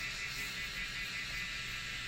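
Steady, unchanging hum inside a vehicle cabin, a pitched droning with several fixed tones and no sudden sounds.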